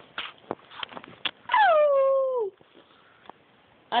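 A small poodle howling once: a single call of about a second, starting high and sliding down in pitch, about one and a half seconds in.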